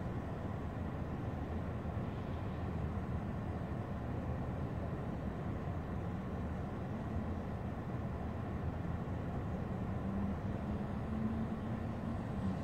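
Steady low rumble of a car engine idling, heard from inside the cabin, with a faint low hum coming in about halfway.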